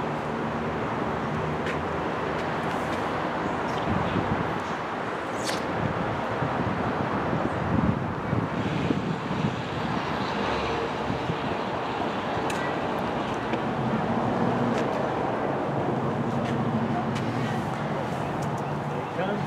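Steady outdoor noise with indistinct voices of people talking in the background.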